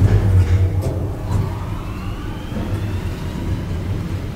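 A 1982 Schindler R-Series traction elevator car starting to travel: a steady low hum from the machine, with a faint whine rising in pitch over the first couple of seconds as the car accelerates, heard from inside the car.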